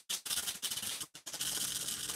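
Dry brown rice trickling slowly from its bag through a small funnel into a fabric rice bag: a faint, steady granular trickle that cuts out briefly near the start and again about a second in.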